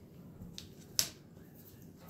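Quiet handling of thin MDF roof pieces being lined up on a cutting mat, with a faint tick and then one sharp click about halfway through.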